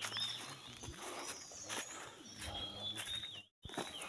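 Forest birds calling, short arching whistled notes repeated again and again, over the scuffing footsteps of several people walking on a leaf-littered dirt trail. The sound cuts out completely for a moment near the end.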